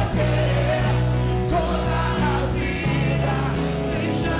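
A man singing a worship song into a handheld microphone over instrumental accompaniment with sustained bass and chord notes.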